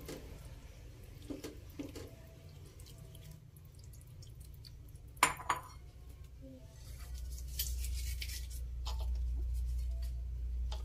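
Raw chicken livers and gizzards are dropped by hand into an aluminium pot, with soft knocks of kitchenware and one sharp clink about five seconds in. From about seven seconds a steady low rumble sets in.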